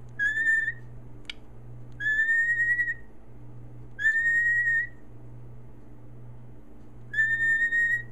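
A cockatiel whistling four separate notes, each a steady, slightly rising tone lasting up to about a second, with pauses of one to two seconds between them. The four whistles count out the answer to 'three plus one'.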